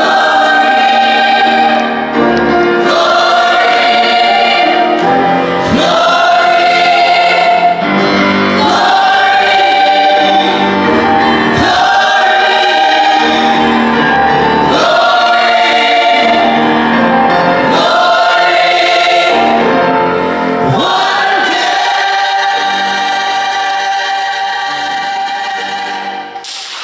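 Mixed-voice choir of men and women singing held chords in phrases a couple of seconds long, growing quieter over the last few seconds.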